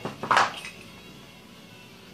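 A short clatter of a barrel-clamp rail mount handled against a rifle barrel about half a second in, then only faint handling.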